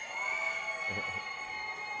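A long, steady horn-like tone made of several held pitches at once, fading slowly.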